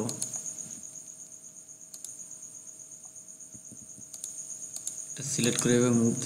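A few sharp computer mouse and keyboard clicks over a faint, steady, high-pitched pulsing whine. A man's voice starts speaking again near the end.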